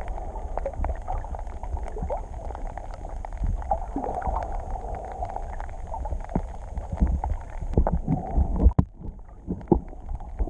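Underwater ambience heard through a camera's waterproof housing: a steady low rumble of moving water with many scattered clicks and crackles. A few louder knocks and a brief splash-like burst come near the end.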